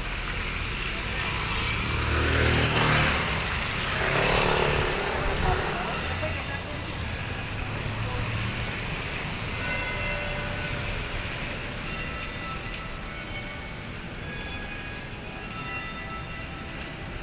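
Road traffic on a wet street: two vehicles pass close by in the first few seconds, each a swell of tyre hiss and engine sound rising and falling away, then a steady traffic background.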